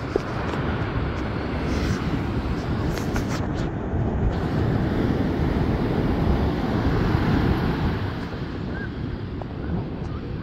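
Ocean surf breaking and washing up the beach, mixed with wind buffeting the microphone. The rushing noise swells in the middle and eases a little near the end.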